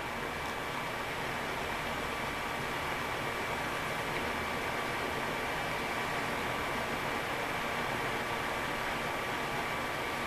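Steady background hiss with a faint, constant high-pitched whine and no distinct events: room tone and recording noise.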